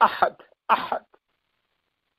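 A male lecturer's voice, heard over a conference-call phone line: the tail end of a spoken word, then about a second in a short throat-clearing sound.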